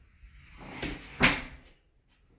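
A short rustle that swells into a single sharp knock or clunk a little over a second in.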